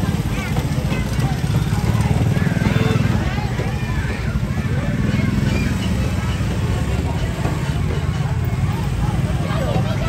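Several motor scooters running at low speed close by as they ride past, a steady low engine drone, with a crowd of people's voices talking over it.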